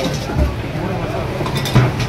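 A steel serving spoon clinking against steel bowls and containers as it is dipped and set back, a couple of sharp clinks with the loudest near the end, over background voices.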